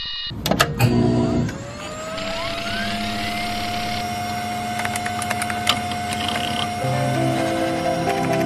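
Electronic intro sound: tones glide upward and settle into one held tone over scattered clicking from a computer hard drive seeking. A new set of tones enters near the end.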